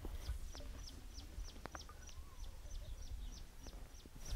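A bird calling faintly and repeatedly, a steady run of short, high chirps that each fall in pitch, about three to four a second.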